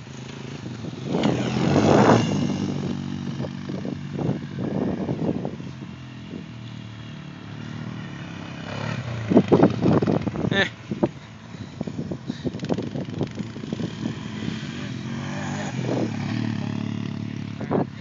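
ATV engine revving up and down as the quad rides across a grassy field, loudest about nine to ten seconds in as it passes close by.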